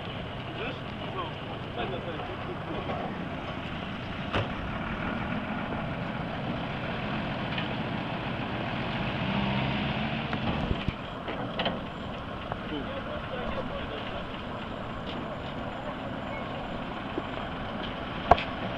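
Vehicle engine running at low speed, a steady low rumble, with a few short clicks.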